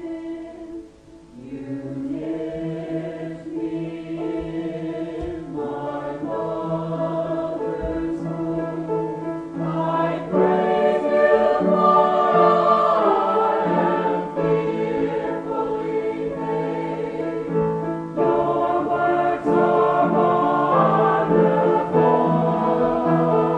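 A choir singing a slow Christian song in held, sustained chords, growing louder about ten seconds in.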